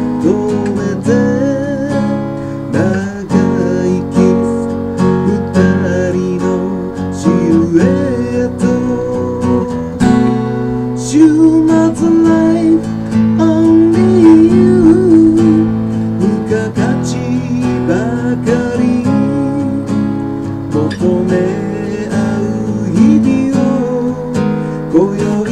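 Acoustic guitar strummed in chords, with the chords changing every second or two and single picked notes in between.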